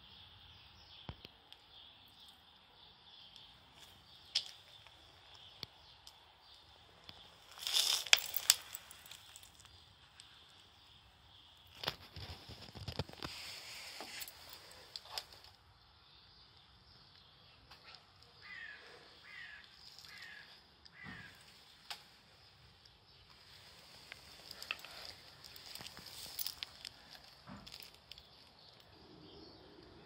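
Quiet outdoor background with scattered knocks and rustles of handling, loudest about eight seconds in and again around twelve to fifteen seconds. Around two-thirds of the way through, a bird calls four times in quick succession, each call falling in pitch.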